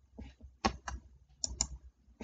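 Light, irregular clicking of a computer mouse and keyboard, about seven quick clicks in two seconds, two of them close together near the middle.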